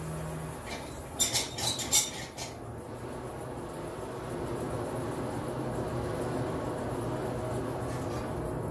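A few sharp metal clinks of tools against the steel forge, then a forge blower driving air into the charcoal fire, a steady rushing whir that builds and holds.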